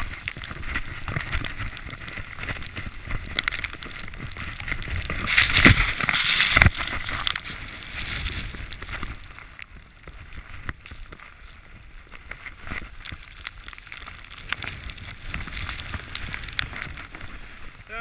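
Skis hissing and rushing through deep powder snow, with wind on a helmet-mounted camera's microphone. A louder surge of rushing comes about six seconds in; after that it is quieter.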